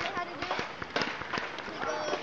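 Children's voices chattering and calling across the open concrete, with scattered sharp clacks and knocks of skateboards on the concrete surfaces.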